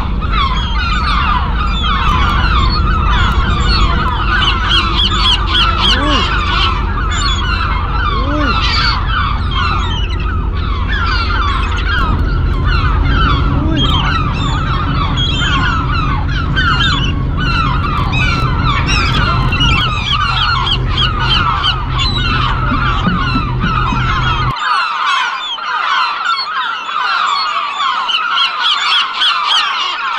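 A ferry's engine drones steadily under a dense, continuous chorus of many short honking calls, like a flock of birds. The low engine drone drops out abruptly about 24 seconds in, and the calls carry on.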